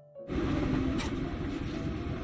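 The last piano notes of background music, then, about a third of a second in, a sudden change to steady rushing room noise inside a motorhome cabin, with a single click about a second in.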